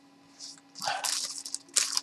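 Cardboard LP jackets being handled and pulled up: a second or so of rustling and scraping, ending in a sharp crisp swipe.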